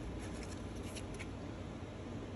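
Faint rustling and light clicks of cardboard trading cards sliding against each other as they are flipped through a hand-held stack, mostly in the first second or so, over steady low room noise.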